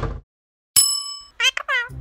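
A single bright bell ding about three-quarters of a second in, ringing and fading, followed near the end by a few quick bird-like chirps: sound effects on an animated title card.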